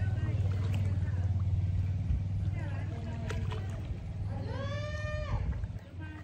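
Loud low rumble of wind buffeting a handheld phone's microphone, easing after about four seconds. Near the end a person's voice gives one long drawn-out call.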